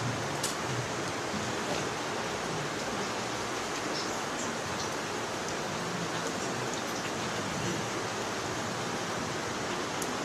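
Steady, even hiss of room background noise, with a faint click about half a second in.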